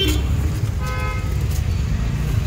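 Street traffic rumble with one steady vehicle horn toot, under a second long, starting a little under a second in.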